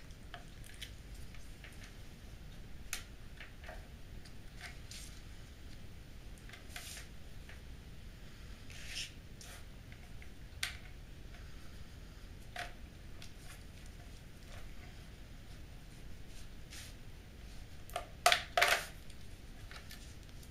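Plastic case clips of an Acer Revo RL80 mini PC being prised open with guitar plectrums: scattered faint clicks and scrapes along the seam, then a louder cluster of snaps near the end as the top comes free.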